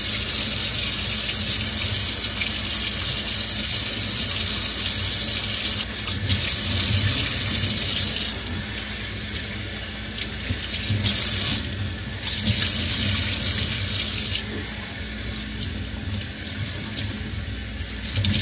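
Kitchen faucet running a steady stream into a stainless steel sink while shampoo is washed through hair under it. The rush of water drops and rises in level several times.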